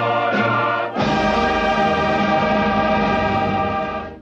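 Recorded choir singing a song, moving into one long held chord about a second in that begins to fade away at the very end.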